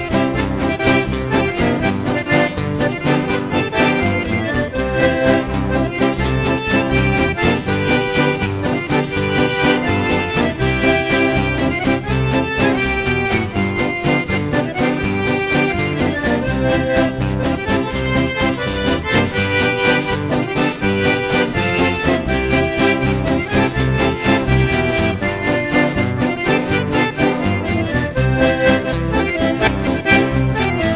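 Accordion-led instrumental valseado, a rural country waltz, playing steadily at full volume.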